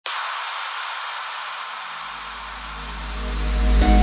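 Intro sound design: a hissing whoosh opens suddenly and slowly fades, while a deep bass swell rises from about halfway through and builds into music with a short hit near the end.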